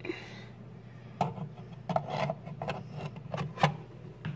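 Handling sounds: from about a second in, a run of light, irregular knocks and rubs of objects being moved on a wooden table, over a low steady hum.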